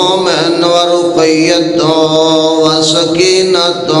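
A man chanting an Arabic recitation in long, drawn-out, wavering notes, amplified through a microphone, closing the phrase with the blessing "sallallahu alayhi wa sallam" near the end.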